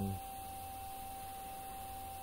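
Steady background noise in a pause between words: a thin, unchanging high whine over a low electrical hum and faint hiss.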